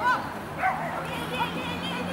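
A small dog barking a couple of short, sharp barks as it runs an agility course, with a person's voice alongside.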